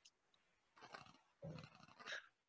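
Near silence, broken by two faint, brief noises, one about a second in and one about a second and a half in.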